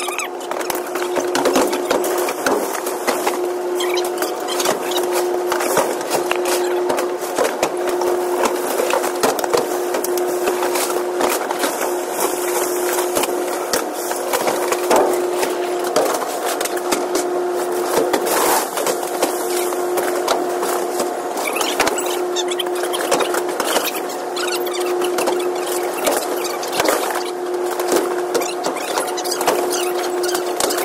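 Extendable roller conveyor running in a trailer: a steady droning tone that cuts out briefly at regular intervals, over continuous rattling and knocks of cardboard boxes moving along the rollers and being handled.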